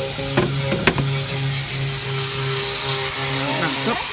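A steady machine hum with a low pulsing note, with two sharp clicks about half a second and a second in.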